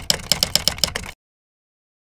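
A rapid run of sharp clicks, about eight in a second, that stops abruptly just over a second in, followed by dead silence: an edited intro sound effect over the title card.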